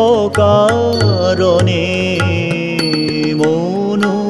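Brahmo sangeet devotional song: a melodic line bends and then holds a long note between sung lines, over steady percussion strokes.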